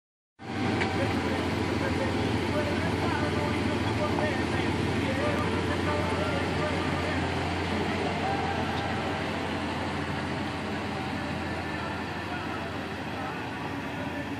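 Dodge Ram 1500 pickup's engine running steadily as the truck backs down a driveway, growing slowly fainter as it moves away.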